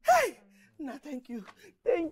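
A loud, high exclamation of a voice, sliding down in pitch, followed by a few quick words in a joyful greeting.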